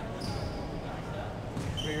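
Basketballs bouncing on a gym court in the background, under the steady hum of a large hall.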